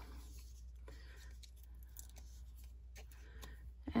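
Faint rustling and soft taps of a die-cut cardstock heart being handled and pressed down onto a card front, over a steady low hum.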